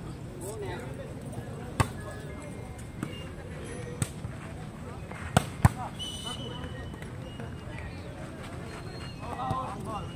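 Hands striking a volleyball in a rally: a sharp slap about two seconds in, lighter hits around three and four seconds, then two loud hits in quick succession about five and a half seconds in.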